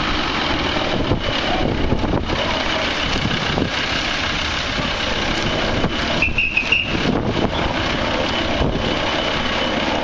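Cars moving slowly at low speed, heard under a steady, dense noisy rush. A short, wavering high tone sounds a little after six seconds in.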